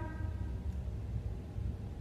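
Room tone: a steady low hum with faint hiss and no distinct events.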